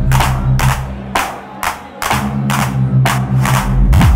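Electronic dance music from a DJ set: a deep bass line under a crisp percussion hit about twice a second. The bass drops out for about a second midway, then comes back in.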